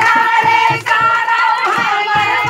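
Women singing a folk song together in high voices over a steady beat of about four strikes a second.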